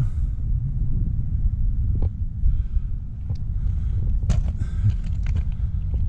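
Wind buffeting the microphone: a steady low rumble that wavers in strength, with a few faint clicks over it.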